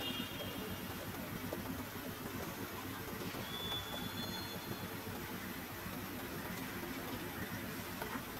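Steady low background rumble of outdoor ambience, with a brief thin high whistle about three and a half seconds in.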